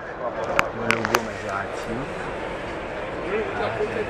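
Speech: a man's voice talking, with three sharp clicks in the first second or so.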